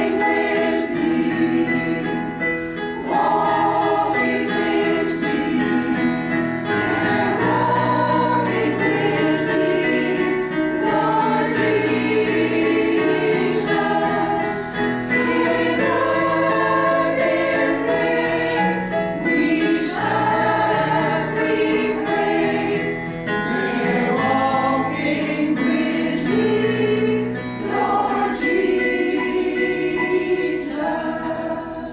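An amateur choir of elderly singers singing one verse of a song together, in held notes that change every second or so. It is one of the first rehearsals of the year.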